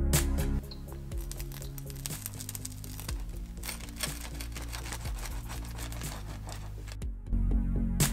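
A steel pizza wheel rolling through a crisp wood-fired pizza crust on a wooden board, a dense run of crackling crunches, over quieter background music. The music swells back up near the end.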